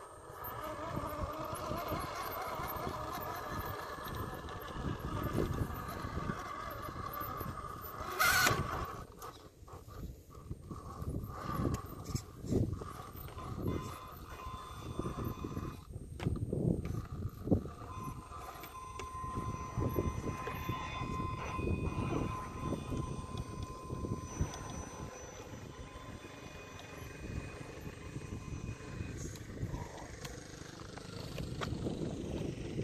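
Brushless motor and drivetrain of an Axial SCX10.2 scale crawler whining as it crawls up rock, the pitch wavering with the throttle and then holding steadier later on. Irregular low thuds come through, and a brief louder rush about eight seconds in.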